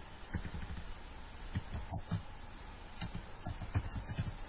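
Computer keyboard keys clicking: a few irregularly spaced keystrokes as a command is typed, over a faint steady hum.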